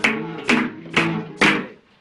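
Flamenco guitar strummed: four sharp chords about half a second apart, the last one ringing and dying away.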